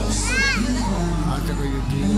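Worship music and voices in a large hall, with a child's short high-pitched squeal, rising then falling, about half a second in.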